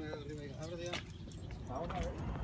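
Untranscribed voices over a steady low rumble, with a few sharp clicks about a second in.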